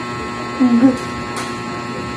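Steady electrical hum in a small room, with one short spoken syllable about half a second in, a word being sounded out.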